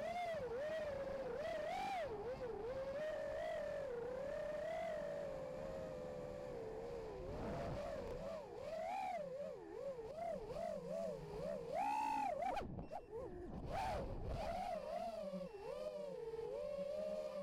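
The brushless motors and propellers of a 5-inch FPV racing quadcopter (Racerstar BR2205 2300 kV motors) whine steadily, the pitch wavering up and down as the throttle changes. The sound dips briefly a few seconds before the end.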